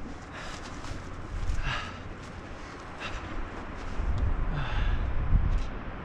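Wind rumbling on the microphone, stronger in the second half, with a couple of faint, brief breath- or voice-like sounds.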